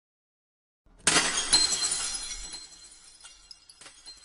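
Glass-shattering sound effect: a sudden crash about a second in, then shards tinkling and dying away over about three seconds, with a last small clink near the end.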